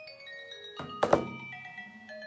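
A short electronic melody of bell-like, marimba-like chime notes at several pitches, each note held briefly and overlapping the next. Two sharp knocks land close together about a second in.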